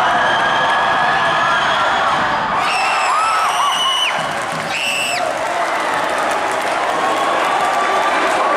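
Gym crowd cheering and shouting through a tense free-throw moment. A long shrill whistle blast comes about two and a half seconds in, and a short one about five seconds in.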